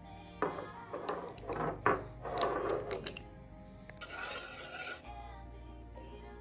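Several short scraping, rubbing sounds over soft background music, followed by a brief hiss about four seconds in.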